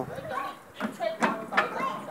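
Faint, brief children's voices on a playground, with three short sharp knocks in the second half.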